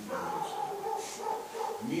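A man's voice drawn out in one long, wavering vocal sound between words of speech.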